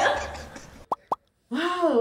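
Two short rising pops, about a quarter second apart, each sweeping quickly up in pitch.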